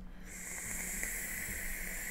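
Steady hiss of air drawn through a Freak Show rebuildable dripping atomizer on a box mod during a long inhale.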